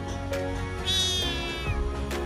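A kitten mewing once, a high, thin cry lasting just under a second that falls slightly in pitch, over background music.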